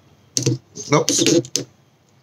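A man muttering 'nope', with a couple of sharp clicks of fingertips tapping a touchscreen phone.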